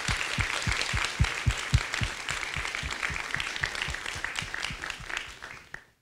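Audience applauding, with one person's claps close to the microphone standing out about four times a second. The applause fades out near the end.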